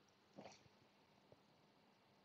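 Near silence: room tone, with one faint, short sound about half a second in.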